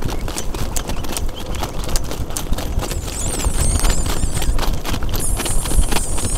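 Rapid hoofbeats of a Standardbred harness horse going at speed in front of a sulky, heard close up, with wind rumbling on the microphone.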